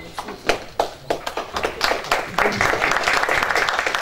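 Applause from a roomful of people: a few scattered claps at first, building to steady clapping about halfway in.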